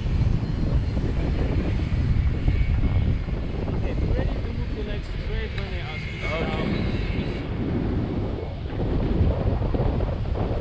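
Steady, loud rushing of wind on the microphone of a tandem paraglider in flight, heavy in the low range.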